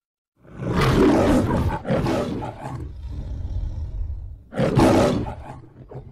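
The MGM studio logo's lion roar: three roars, the first about half a second in, a shorter second one right after it, and a third near the end, with a low growl running between them.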